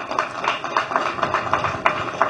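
A crowd applauding: many hands clapping together in a dense, steady patter.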